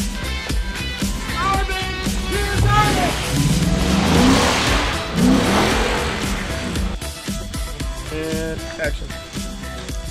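Background music over a pickup truck driving away, its engine and tyre noise swelling to a peak with a rising engine note about four to five seconds in, then fading.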